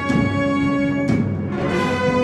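A concert wind band of brass, woodwinds, percussion and string basses plays a held chord. About a second in, the chord breaks on a struck accent, and after a second stroke a new chord is held.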